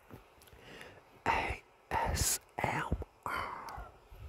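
A man whispering four short phrases, each a hissy burst, with a sharp 's'-like hiss in the second.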